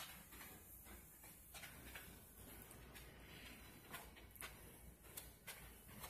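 Near silence: room tone with faint scattered clicks and rustle from the camera being carried.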